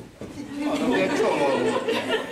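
Several people talking at once in a hall, a muddle of overlapping voices that starts about half a second in.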